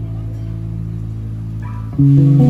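Live band music, the electric guitar and bass letting a low chord ring and fade softly, with a few short higher guitar notes near the end; right at the end the full band comes back in loudly.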